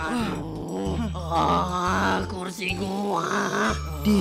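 A voice groaning and muttering in embarrassment ("aduh") over soft background music.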